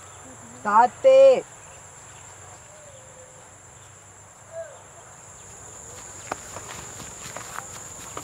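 Steady high-pitched insect chorus. A short, loud wordless voice sound about a second in.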